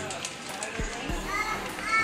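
Store aisle background: children's voices in the distance over faint music, with a couple of soft low thumps about halfway through.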